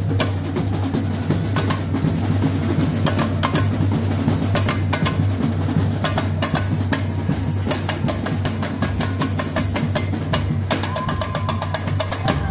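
A samba bateria playing: tamborins struck with beaters in a fast, dense rhythm over the steady low beat of surdo bass drums.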